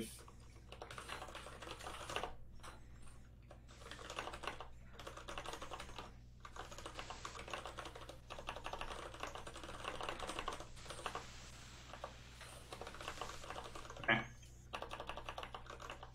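Computer keyboard typing in quick, faint runs of keystrokes with short pauses between them, with a brief voice sound near the end.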